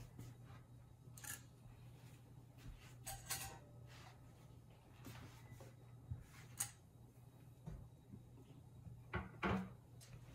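Hot glass canning jars lifted with a jar lifter and set down on a towel-covered counter: a few short soft knocks and clicks, the loudest near the end, over a steady low hum.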